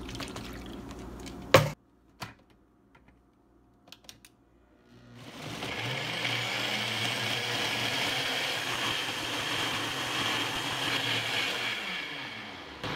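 A sharp click, a few faint ticks, then a NutriBullet Max blender starts about five seconds in. Its motor spins up and runs steadily at full speed, puréeing romaine and kale with water into a green smoothie.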